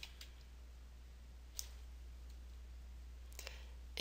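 Faint computer mouse clicks: one sharp click about a second and a half in and a few softer ticks near the end, over a low steady hum.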